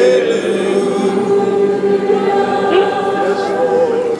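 Church congregation singing a slow worship song together, the voices holding long, sustained notes.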